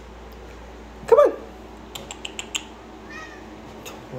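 A domestic cat meows once, a short call that rises and falls, about a second in. A quick run of light clicks follows, then a faint higher call near the end.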